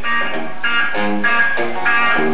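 Amplified electric guitar picking a string of single notes, about three a second, while being tuned up between songs.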